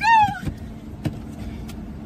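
A woman's high-pitched cry, falling in pitch, for about half a second. A few short knocks follow, over the steady low hum of the car.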